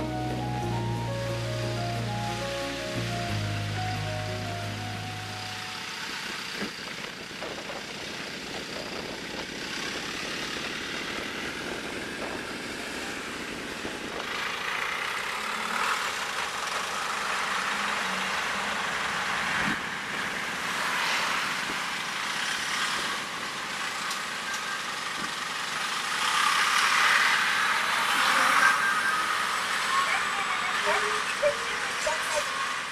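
Background music fades out over the first few seconds, leaving the engine and tyres of a Hino Liesse II microbus pulling away. After a cut, a Mitsubishi Fuso Rosa microbus drives up and past, its engine and tyre noise building to a peak near the end. The sound is thin in the bass because it was low-cut to remove wind noise.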